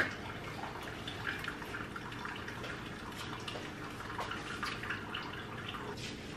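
Faint, steady trickling and dripping from a drip coffee maker brewing.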